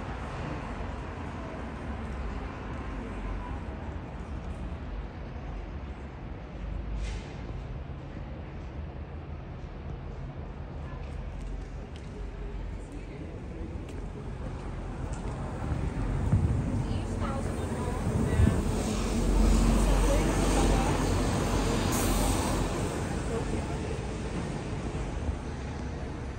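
Street ambience: a steady traffic hum with indistinct voices. It grows louder for several seconds past the middle, with a deeper rumble, then eases off.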